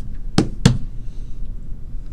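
Two sharp clicks about a quarter of a second apart, under half a second in, over a steady low hum.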